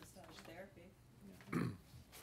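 Faint, low speech in a small meeting room, then one short, loud vocal sound close to a desk microphone about one and a half seconds in.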